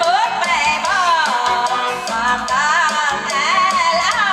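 Live Khmer song played through large loudspeakers: a woman singing into a microphone over electronic keyboard accompaniment with a steady beat.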